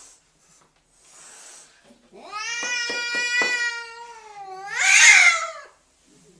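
Domestic cat giving a long, drawn-out yowl, then a louder, harsher cry near the end, the sound of a cat defending its territory.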